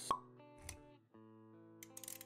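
A sharp pop sound effect about a tenth of a second in, over background music of held notes; a soft low thump follows after about half a second, and the music drops out briefly around one second before picking up again.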